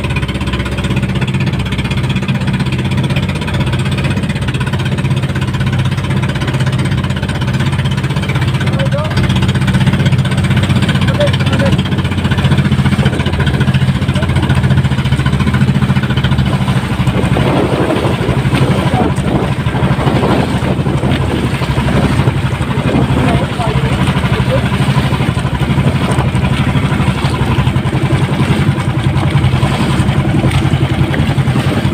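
Outrigger boat's engine running steadily under way, with water rushing and splashing against the hull, heavier from about halfway through.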